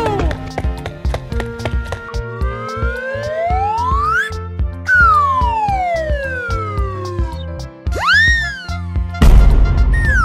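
Children's background music with a steady beat, over which a cartoon slide-whistle effect glides up for about two seconds, then down for about two seconds, then gives a quick rise and fall. Near the end a burst of noise comes in with another falling whistle.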